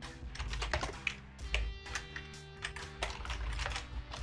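Typing on a computer keyboard: a run of quick, irregular keystrokes, with soft background music underneath.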